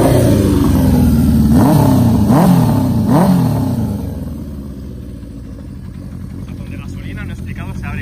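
A 1977 Honda CB400 Four's air-cooled inline-four is blipped three times, each rev rising quickly and falling back. The engine then settles to a quieter, steady idle for the second half.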